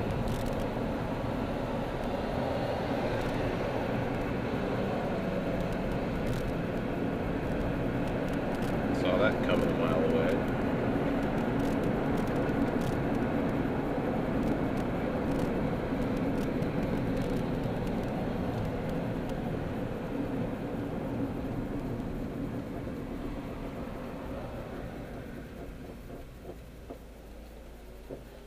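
Steady road and engine noise inside a moving car's cabin. It fades over the last few seconds as the car slows for a stop, and a brief pitched sound comes about nine seconds in.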